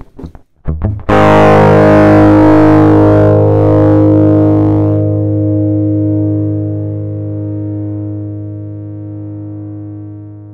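Distorted electric guitar: a few short choppy bursts, then a chord struck about a second in and left to ring. It sustains and fades slowly and smoothly, with no abrupt cutoff, as a downward expander at its lowest 1.5 ratio lets the decay through.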